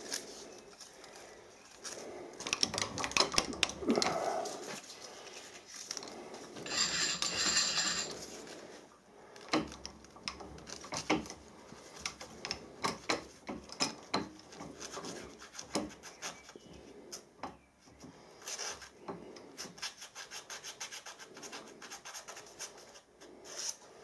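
A sheet of paper rustling and rubbing as it is worked between the slitting saw's teeth and the workpiece to touch off the saw, with scattered light clicks of hand handling. The rustling is densest about seven seconds in.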